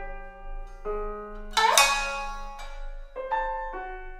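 Shamisen and piano playing in a slow, sparse duet: single notes that ring on. The loudest sound is a sharp, bright stroke a little before the middle.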